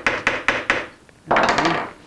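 A one-handed trigger bar clamp being ratcheted tight against a wooden guitar mold: a quick run of about four sharp clicks, one for each squeeze of the trigger. About a second and a half in comes a brief rasping scrape.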